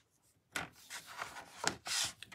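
Sheet of cardstock sliding and rubbing under a hand across the base of a paper trimmer, starting about half a second in, with a couple of light clicks near the end.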